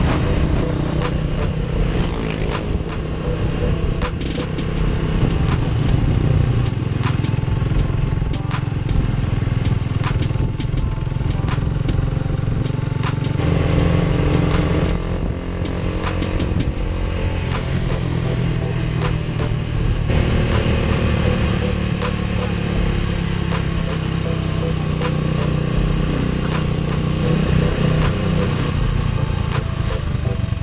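Motorcycle engine running under way, its note changing about 13 seconds in and again around 20 seconds in, with music playing along.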